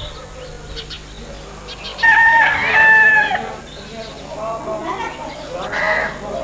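A rooster crowing once, a loud held call of about a second and a half that bends at the end, over faint background chatter of people.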